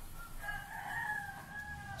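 A rooster crowing once, faint, in one long drawn-out call that starts about half a second in, rises slightly and then eases down.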